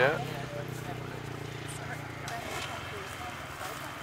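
An enduro motorcycle engine idling steadily, fading away about two seconds in, under faint chatter of voices.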